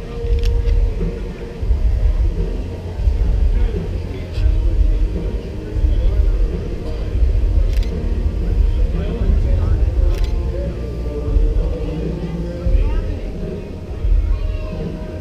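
Heavy, gusting low rumble of wind buffeting the camera microphone, over indistinct voices of people in an open plaza.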